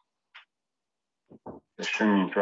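Mostly silence, broken by a short breathy hiss, then two brief throaty sounds and a man's slow speaking voice starting near the end.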